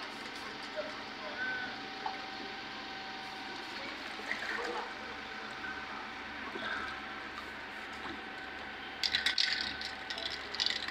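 Shallow water sloshing and splashing around a person kneeling and moving in it, over a steady faint hum; the splashing gets louder and rougher near the end.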